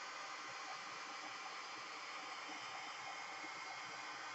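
Faint, steady hiss of background noise with no distinct sound events; the brushing of the paint is not clearly heard.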